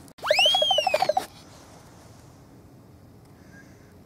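A short electronic sound effect of about a second: a tone that sweeps up steeply and slides back down, over a fast, even pulse of about eight beats a second. A transition effect laid over the cut between clips, followed by faint background.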